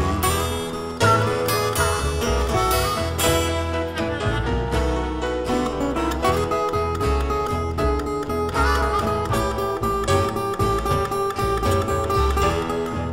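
Blues band playing an instrumental stretch between sung lines: guitar over a pulsing bass line and a steady drum beat.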